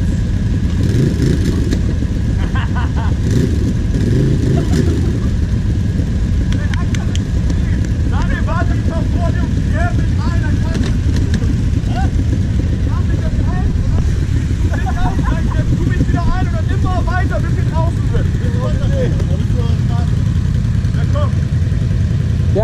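Quad (ATV) engine idling with a steady low rumble throughout. Voices call out in the background through the middle and later part.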